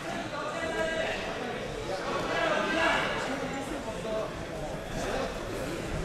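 Indistinct voices of several people talking and calling out in a large hall, none of them close; it is a low background murmur rather than one clear speaker.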